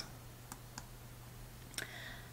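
Near quiet: a low, steady hum with a few faint, short clicks. The clearest click comes a little before the end.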